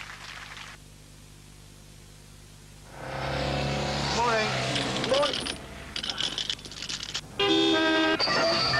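A music track fading out into a couple of seconds of low steady hum. Then street traffic noise, ending in a loud horn blast.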